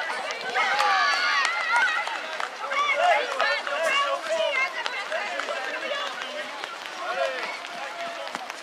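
Young children's voices calling and shouting over one another during play.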